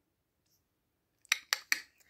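Three short, sharp mouth clicks about a quarter of a second apart, made by a person trying to rouse sleeping puppies.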